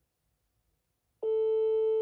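Telephone ringing tone of an unanswered outgoing call: one long steady tone, a bit over a second long, starting just past halfway.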